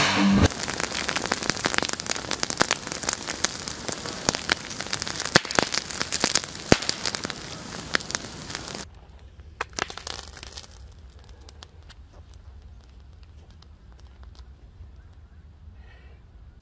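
Aftermath of a large sodium–water explosion outdoors: a dense crackle of small ticks and pops for about nine seconds. It then drops suddenly to a few scattered ticks and a faint low background.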